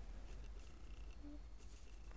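Faint steady low hum of room tone, with no distinct event.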